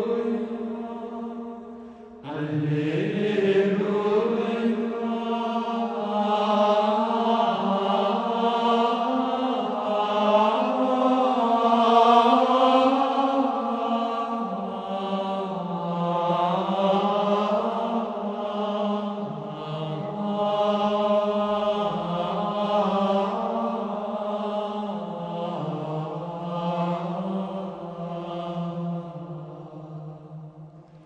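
Gregorian chant: low voices singing a slow, unaccompanied single-line melody in long held notes. One phrase ends about two seconds in and the next begins, and the singing fades near the end.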